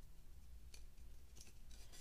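Faint handling sounds of a shoelace being pulled through the holes of a laminate insole, with a few light ticks and rustles.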